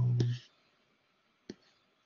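A drawn-out spoken "um" trailing off in the first half second, then a single sharp mouse click about a second and a half in.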